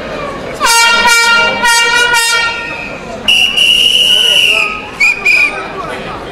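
A handheld air horn blown in four quick blasts, then a higher-pitched toot held for about a second and a half and two short toots, over crowd chatter.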